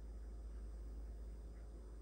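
Quiet room tone with a steady low hum and no distinct event.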